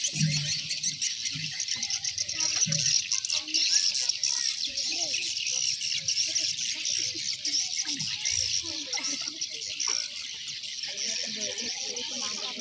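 Outdoor ambience: a dense, continuous high-pitched chirping, with faint scattered voices underneath.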